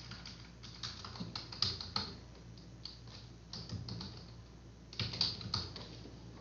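Computer keyboard typing: keys clicking in short, irregular runs, with a denser flurry about five seconds in.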